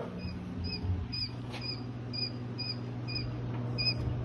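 Quail chicks peeping in a brooder: short, high chirps repeating two to three times a second, over a steady low hum.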